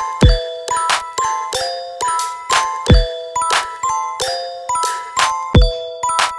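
Instrumental electronic bass house / UK garage beat made on the Drum Pads 24 app: short, repeating pitched synth notes over a steady pattern of sharp percussion hits. A deep kick with a falling pitch lands three times, about every two and a half seconds.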